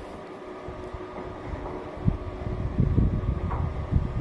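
Steady hum of a motorised bioclimatic pergola's louver drive, with low wind rumble on the microphone that gets louder and gustier about halfway through.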